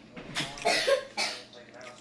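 A woman coughing: three short, breathy coughs in quick succession.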